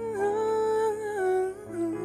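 A woman's voice singing a slow ballad in long held notes that step down in pitch, with a slight waver, over sustained chords on a Kurzweil stage piano.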